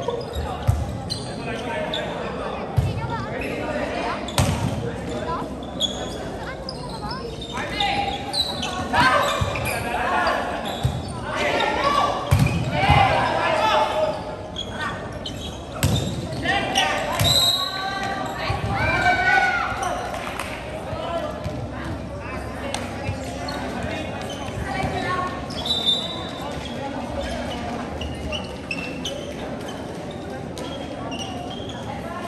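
A volleyball rally in a large indoor gym: the ball is served and struck with sharp slaps against a reverberant hall, while players' and spectators' voices shout, busiest about a third of the way in to two-thirds through.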